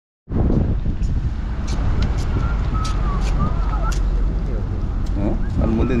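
A herd of Deccani sheep moving along a road: scattered sharp clicks over a steady low rumble, with a short voice-like call near the end.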